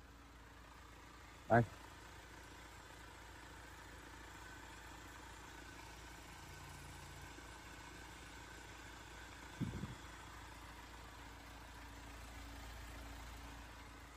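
2016 UAZ Pickup's diesel engine idling, faint, steady and smooth. A brief louder noise comes about ten seconds in.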